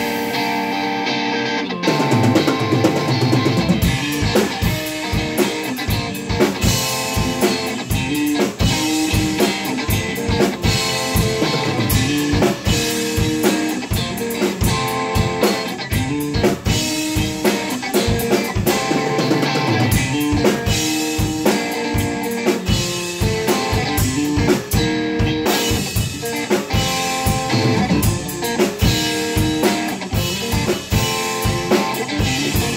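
Electric guitar and a Yamaha drum kit playing together in an instrumental jam, with bass drum and cymbal hits under sustained guitar notes. The guitar plays almost alone for about the first two seconds before the drums come back in.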